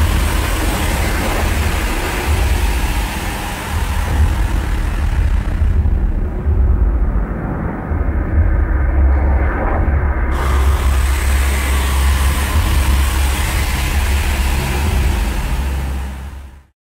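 A loud, steady low rumbling drone with a hiss of noise above it, an ambient noise soundscape. The high hiss cuts out abruptly for about four seconds in the middle, then comes back.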